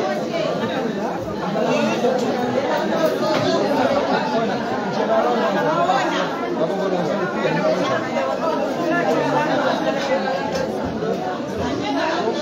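Overlapping chatter of many women talking at once around dining tables, steady throughout.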